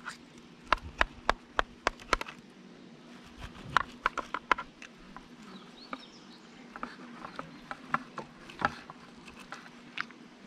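A small knife clicking and scraping against the wooden walls of a stingless-bee honey super as the comb is cut free along its edges: irregular sharp ticks in several quick clusters. A faint steady hum runs underneath.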